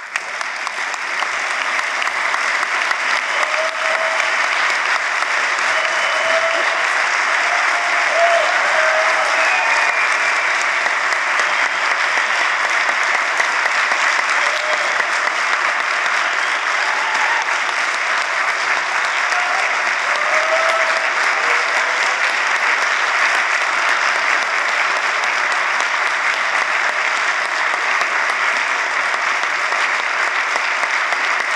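Large audience applauding. The clapping swells within the first couple of seconds, then holds steady and dense.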